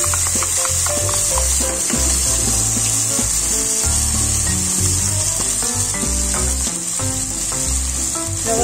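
Chopped green onions sizzling in hot annatto oil in a steel pot, a steady frying hiss, with background music underneath.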